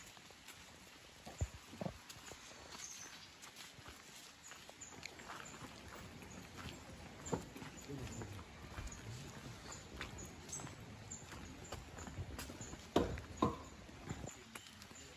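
Irregular footsteps on a gravel and stone path, with two louder steps near the end. A faint high chirp repeats a few times a second through most of it.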